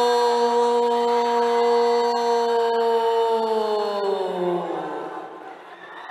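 A man's voice holding one long drawn-out 'oh' call for about five seconds, level in pitch, then sliding down and fading away near the end.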